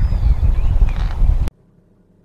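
Wind buffeting the microphone as a loud low rumble, which cuts off suddenly about one and a half seconds in, leaving near silence.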